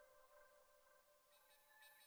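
Near silence, with the last faint trace of steady ringing tones dying away.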